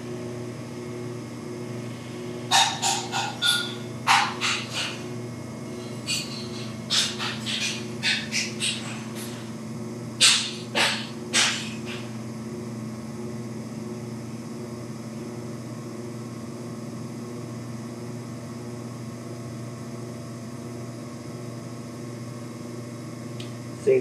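Electric pottery wheel motor humming steadily as it spins. During a pull, the hands and sponge on the water-slicked clay make short wet squelches, clustered in the first half and then stopping, leaving only the hum.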